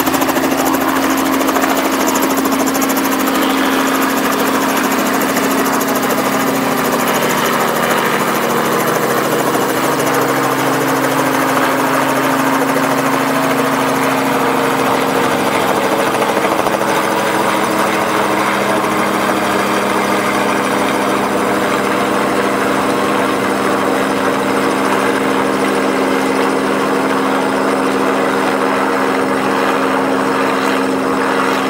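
Robinson R44 Raven I helicopter climbing away at maximum power in a max-performance takeoff: the steady beat of the rotor and the drone of its piston engine, with a steady hum. The highest part of the sound softens a little near the end as it gains height.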